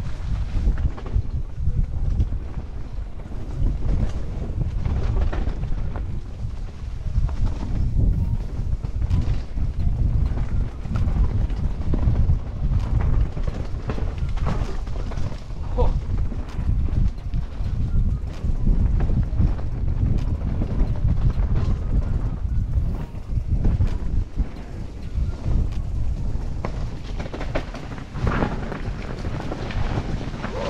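Wind buffeting a helmet-mounted action camera's microphone on a fast mountain-bike descent, mixed with the tyres running over dirt and dry leaves and the full-suspension bike rattling and knocking over bumps and roots.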